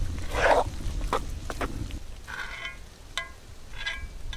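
Wooden spoon stirring thick cornmeal banosh in a cast-iron cauldron: several wet, scraping strokes over the first two seconds. Then three short pitched calls from an animal in the second half.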